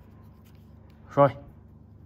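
Faint rustle and rubbing of fingers handling a wristwatch and its leather strap as it is turned over in the hand, under a single spoken word about a second in.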